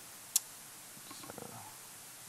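A single sharp laptop click about a third of a second in, over a steady room hiss; faint indistinct murmuring follows about a second later.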